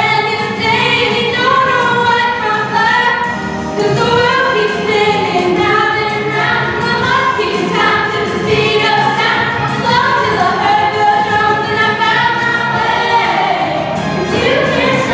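Young stage cast singing a musical-theatre song together as an ensemble over instrumental accompaniment, without a break.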